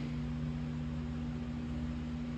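Steady low room hum with a faint even hiss beneath it, unchanging throughout.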